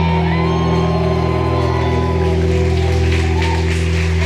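Live music over a hall's sound system holding a steady chord, with audience shouts and whoops rising over it.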